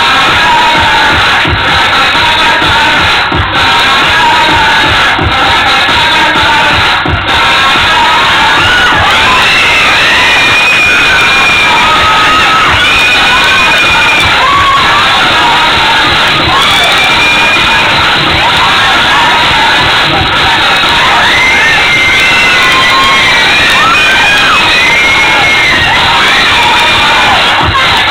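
A crowd cheering and shouting loudly, many high voices calling out over dance music.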